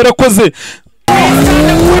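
A car engine revving up as the car pulls away at a race start, its pitch rising steadily, beginning about a second in. A man's voice speaks briefly before it.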